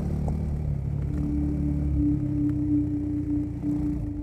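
A motorcycle engine running with a low drone that fades out about two seconds in. A single held musical tone comes in about a second in and carries on.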